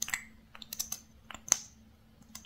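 Plastic lip gloss tube and its wand being handled and tapped together, giving a string of light, irregular clicks. The sharpest click comes about a second and a half in.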